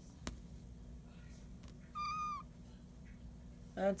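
A five-week-old Bengal kitten gives one short, high mew about two seconds in, after a soft click near the start.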